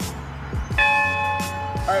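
A large bell mounted on a pedestal, struck once about three-quarters of a second in, its tone ringing on with several overtones. Background music with a steady beat plays underneath.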